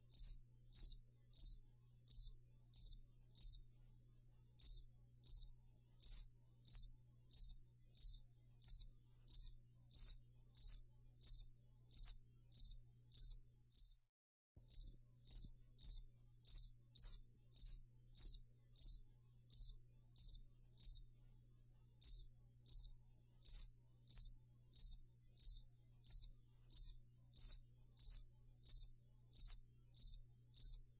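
A cricket chirping in a steady, even rhythm of about two short high chirps a second, with a brief break about halfway through.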